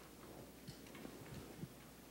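Near silence of a quiet room, broken by a few faint, light taps and knocks.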